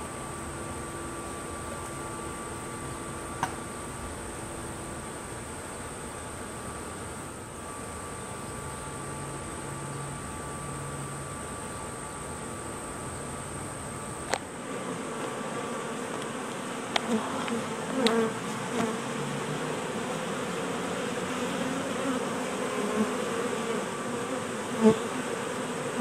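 Honey bees buzzing in a steady hum around opened hive boxes, from a defensive, aggressive colony. A few sharp clicks and knocks come in the second half.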